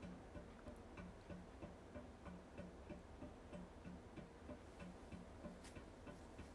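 Faint, regular ticking, roughly three ticks a second, in near silence.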